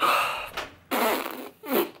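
A man breathing out hard three times close to the microphone: loud, noisy sighs of air, the first the longest.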